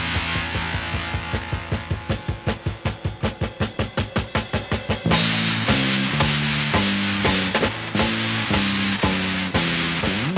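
Late-1960s psychedelic rock from a guitar, bass and drums trio in an instrumental passage. The first half is carried mostly by the drum kit in an even pattern of about five strokes a second. About halfway through, the full band with guitar and bass crashes back in.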